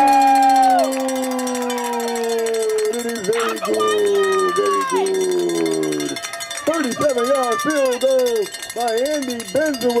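Horns blown in the stands. One long held blast slides slowly down in pitch for about six seconds, then a string of short rising-and-falling toots follows at about two a second, celebrating a made field goal.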